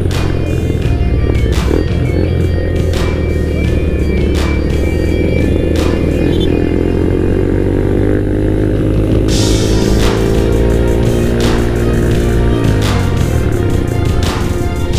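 Background music with a steady beat. Under it, a motorcycle engine can be heard rising in pitch as it accelerates from about six seconds in, then dropping sharply a little before the end.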